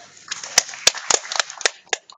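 Small audience applauding at the end of a song, starting about a third of a second in, with a few loud, sharp hand claps close by standing out from the rest.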